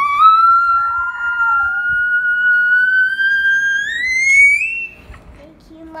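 A child's long, high-pitched squeal held on one note for about five seconds, rising in pitch near the end before breaking off. A second, lower voice sounds faintly underneath about a second in.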